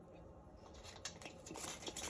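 Faint handling noise from a reusable plastic coffee pod. It is almost quiet at first, then a scattering of small clicks and light scrapes starts about a second in and grows busier towards the end.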